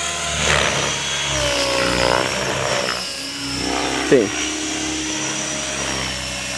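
Align T-Rex 550 RC helicopter flying: a steady high-pitched electric motor and rotor whine whose pitch bends up and down during the first half.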